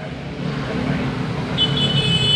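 Road traffic: a vehicle engine rumbling steadily close by, joined near the end by a high, steady, several-toned whine.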